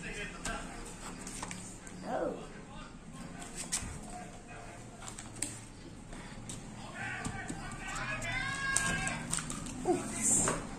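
Cardboard sheets and paper being handled as a kit box is unpacked: scattered light knocks and rustles. A voice is heard faintly about two seconds in and again near the end.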